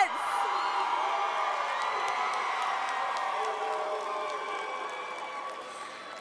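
Crowd cheering with scattered whoops, many voices at once, gradually fading toward the end.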